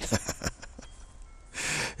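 A man's short breathy laugh, a few quick huffs in the first half second, followed near the end by a sharp intake of breath.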